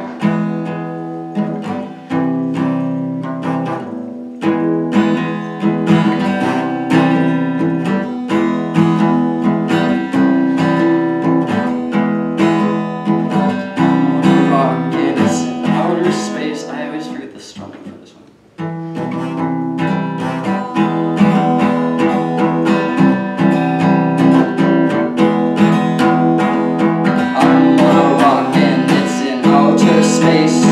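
Acoustic guitar strummed in steady chords, with a voice singing over it from about halfway through and again near the end. The playing breaks off briefly a little past halfway, then picks up again.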